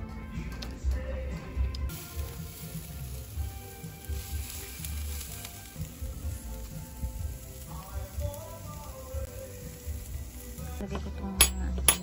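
T-bone steaks sizzling on a grill grate from about two seconds in until near the end, under background music with a steady low beat. A couple of sharp clinks near the end.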